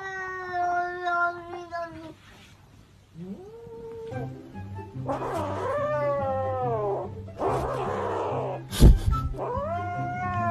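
A cat yowling in long drawn-out meows. One call falls in pitch over the first two seconds, and two more rise and fall from about five seconds in. Background music with a low bass line comes in about four seconds in, and there is a sharp knock near the end.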